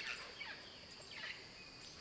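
Faint rainforest ambience: a steady high insect drone with a couple of soft bird chirps.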